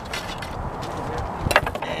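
Handling noise from a wooden-stocked serpentine arquebus being settled on a wooden shooting rest, with one sharp knock about one and a half seconds in, over a steady rumble of wind on the microphone.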